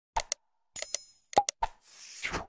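Sound effects of an animated subscribe-button overlay: a couple of quick mouse clicks, a short bell-like ding, a pop, more clicks, then a whoosh near the end.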